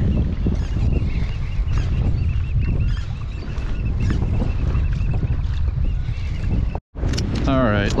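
Steady wind rumbling on the microphone over water sloshing around a kayak on choppy water. The sound cuts off abruptly for an instant just before the end.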